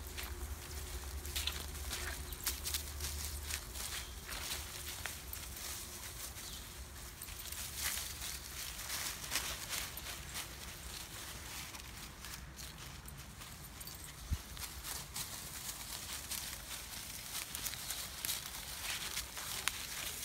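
Footsteps through grass and dry fallen leaves, from a person walking and dogs running about: irregular crunches and rustles.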